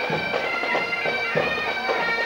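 Marching pipe band playing Highland bagpipes: steady drones under the chanters' melody, with a low drumbeat about every second and a quarter.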